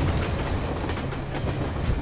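A passenger train passing close by at speed: a steady low rumble with the rapid, rhythmic clickety-clack of its wheels over the rail joints.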